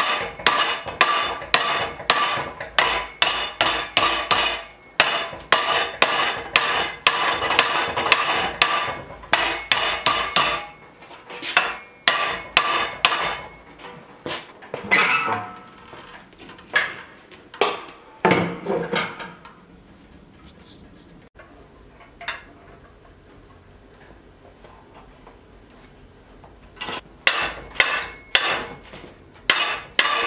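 Hand hammer striking a hot metal bar clamped in a bench vise, bending it during hand forging: a fast run of sharp metal-on-metal blows, about two to three a second, for the first ten seconds or so. A few scattered knocks follow, then a lull, and the hammering starts again near the end.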